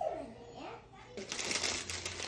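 A high-pitched voice sliding up and down in pitch without clear words, then a burst of crackling, rustling noise over the second half.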